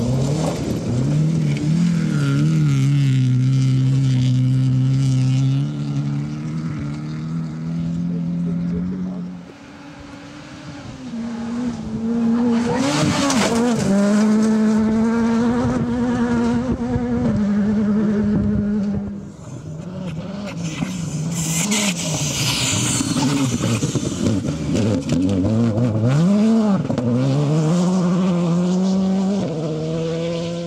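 Rally cars on a gravel stage passing at full throttle one after another, engines revving hard and stepping up and down in pitch through gear changes. Two bursts of gravel and tyre noise come through, one near the middle and one about two-thirds of the way in.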